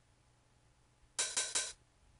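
FL Studio hi-hat sample (CB_Hat.wav) played as a quick run of hits from the typing keyboard in step editing mode. The run starts a little past one second in and lasts about half a second.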